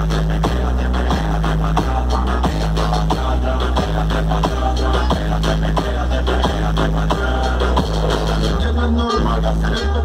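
Electronic music with a deep, repeating bass line in held low notes, played loud through a car audio system's Krack Audio subwoofers.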